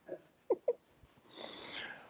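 Quiet pause in a small room: a few very short, faint voice-like sounds in the first second, then a soft breathy intake of breath near the end.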